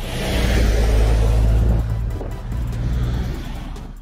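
A heavy truck driving past: a low engine drone and road noise that swell and then fade away, with background music underneath.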